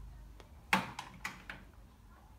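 A solar panel and lamp being handled and set down on a tabletop: a faint click, then a series of four short knocks, the first the loudest.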